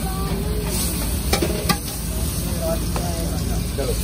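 Flatbread sizzling on a large flat street-food griddle (tawa), a steady frying hiss, with two sharp clicks of utensils at around a second and a half in.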